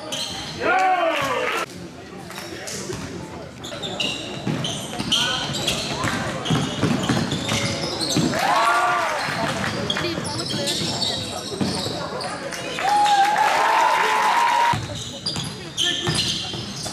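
Basketball game in a large sports hall: the ball bouncing on the court, with people's shouted calls echoing, the longest a held call a little before the end.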